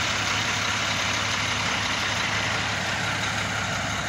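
Truck engine idling steadily: a low hum under an even rushing noise.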